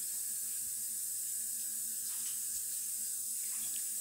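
A steady, even hiss with a faint low hum underneath, unchanging throughout, with no sudden events.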